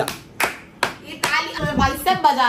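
Four sharp hand claps, evenly spaced about half a second apart, followed by a voice.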